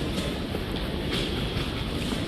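Steady low rumble of a large airport terminal concourse, heard while walking over the tiled floor, with a few faint clicks.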